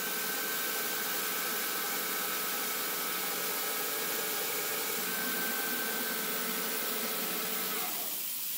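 Hercus PC200 lathe running at 1400 rpm while a cross-hole countersink cuts a deep countersink into a free-cutting steel bush: a steady hiss with a few faint steady tones, which stop just before the end.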